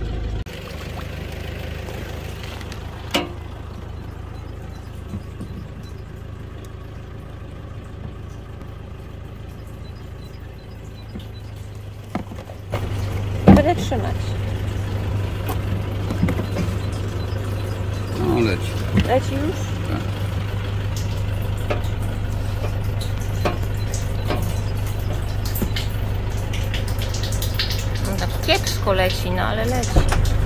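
Small electric water pump switched on about halfway through and running with a steady low hum while it tries to draw water from a spring. It is not yet delivering water, which the owners put down to the pump not having primed. A single knock comes as it starts.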